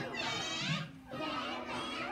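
Young children singing a nursery rhyme together, their voices gliding up and down with some long held notes.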